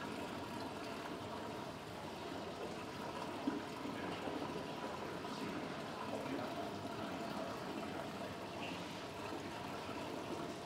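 Steady running and trickling water in an aquarium rock-pool touch tank.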